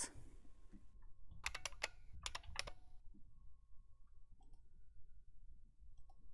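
Faint computer keyboard typing: two quick runs of a few keystrokes each, about a second and a half and two and a half seconds in, followed by a single faint click a little after the middle.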